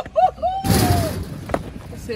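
A man's voice in short repeated cries ending in one longer falling cry, with a heavy thud under it about half a second in as he runs into the metal counter of a hot-dog cart, then a single sharp knock about a second and a half in.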